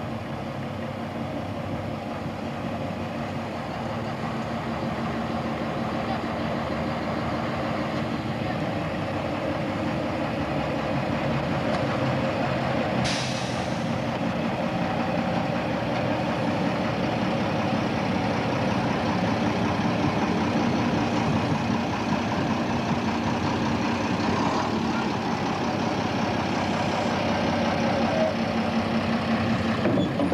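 Diesel shunting locomotive engine running steadily, slowly growing louder, with a short hiss a little before halfway.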